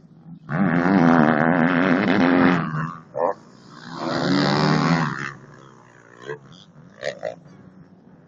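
Motocross bike engines revving hard at the trackside, in two loud stretches, the second as a bike passes close. The sound then drops to a lower engine noise, with a couple of short revs near the end.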